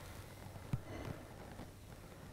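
Adhesive vinyl stencil being peeled slowly off a glazed ceramic plate: faint, with a small tick a little under a second in.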